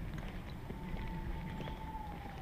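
Footsteps walking on an asphalt path over low rumbling background noise. A faint thin steady tone enters a little under a second in and dips slightly in pitch near the end.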